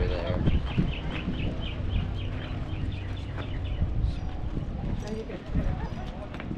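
Outdoor crowd ambience of people talking in the background, with a bird calling a fast, even series of short high chirps, about five a second, through the first half.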